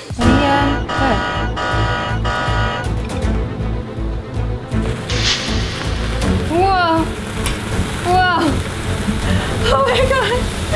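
Electronic background music with a rhythmic stinger for the first few seconds, then a steady fizzing hiss of sparklers igniting as a red-hot knife cuts into a bundle of them. Short wordless vocal exclamations come over it in the second half.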